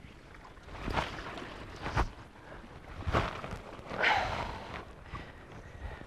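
Fly line swishing through the air in a series of false casts, about one swish a second, with a longer hiss near the end as the line shoots out, over wind on the microphone.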